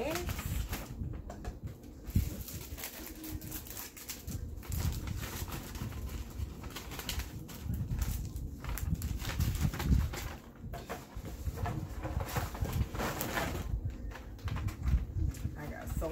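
Plastic-wrapped craft packages and paper gift bags crinkling and rustling as they are handled and packed, with irregular soft bumps throughout.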